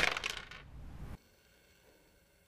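Dice thrown onto a backgammon board: one sharp clack, then a short rattle of small hard pieces bouncing and settling. The sound cuts off abruptly about a second in.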